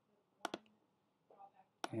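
Computer mouse clicks: a quick double click about half a second in, then a single click near the end.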